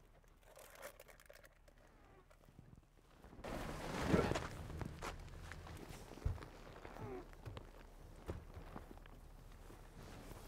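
Quiet rustling and shuffling inside an SUV's cabin. It swells about a third of the way in, then a few soft low thuds follow as a bag is loaded into the rear cargo area.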